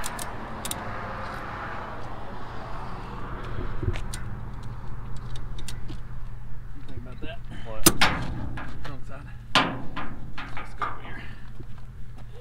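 Ratchet strap being worked to tie a car down on a trailer: irregular metal clicks and clanks, the loudest a sharp clank about eight seconds in, over a steady low hum.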